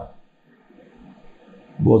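Speech only: a man speaking Hindi, with a pause of about a second and a half between words. Nothing but faint room tone fills the pause.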